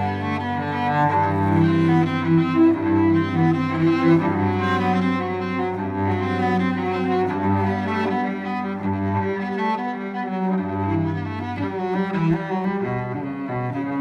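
Cello played with the bow: a melody of held notes, one flowing into the next.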